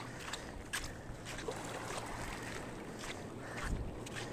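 Shoreline ambience: calm sea water lapping on a pebble-and-sand beach, with light wind on the microphone that swells into a low rumble near the end, and a few faint clicks.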